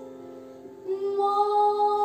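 A boy singing solo over a backing track: a soft accompaniment chord fades out, then about a second in his voice comes in on a long held note.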